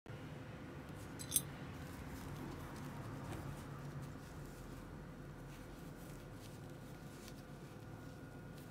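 Faint handling sounds of a leather belt being picked up and turned over in gloved hands, with light scattered ticks and one sharp click about a second in, over a steady low hum.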